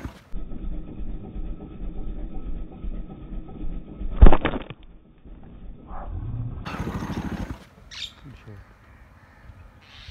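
A slingshot shot: one sharp crack of the released rubber band about four seconds in, with birds calling around it.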